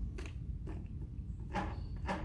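A few plastic clicks and knocks as a battery-powered string trimmer's cutting head is turned over and handled to switch it into edging position, over a low steady rumble.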